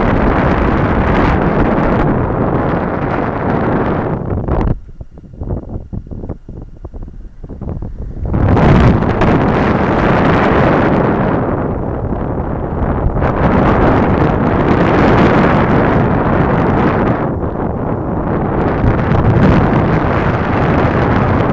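Loud wind buffeting the microphone of a camera carried through the air in flight. It drops away sharply about five seconds in and surges back a few seconds later, then runs on unevenly.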